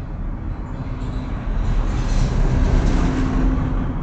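Loud steady rumbling noise with no speech, growing louder about a second and a half in, with a faint hum under it near the end.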